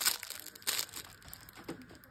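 Plastic packaging crinkling as it is handled and opened by hand, in a few short bursts, the loudest at the start and again just under a second in.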